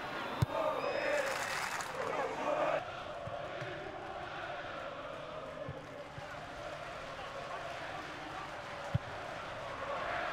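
Football stadium crowd, loudest over the first three seconds as the fans react to a near miss, then a steady background din. Two short thuds of the ball being kicked, one just after the start and one about nine seconds in.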